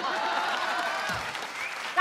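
Studio audience applauding steadily, with a few faint voices in the crowd mixed through it.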